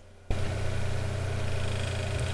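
A steady low hum with a hiss, switching on abruptly about a third of a second in after near silence.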